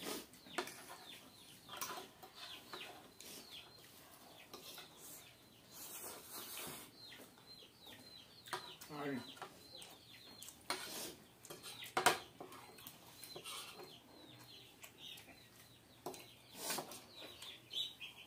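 Metal forks and spoons clinking and scraping on ceramic plates while two people eat noodles, in scattered short clicks with a few sharper knocks.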